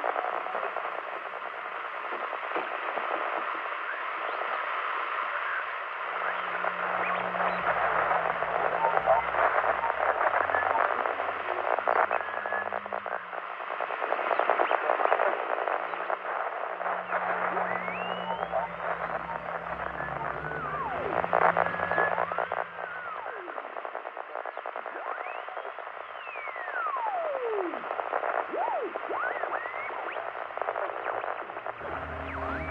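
An old-time radio hissing and crackling with static while being tuned, with whistling squeals sweeping up and down and fragments of voices. All of it comes through a narrow, tinny band. A low droning tone sits underneath for much of the middle.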